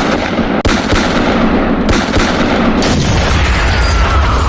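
Automatic gunfire sound effect, a rapid string of shots, giving way about three seconds in to an explosion with a deep rumble.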